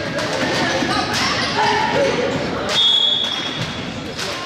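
Gym basketball game sounds: a ball dribbling on the hardwood under crowd voices, then a single steady, high referee's whistle blast about three quarters of the way through, stopping play for a foul.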